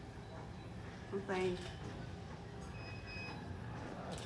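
Steady low rumble of background room noise, with a faint short high beep about three seconds in.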